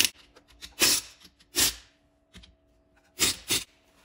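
Handheld power driver running in five short bursts, about a quarter second each, tightening the generator side-cover bolts.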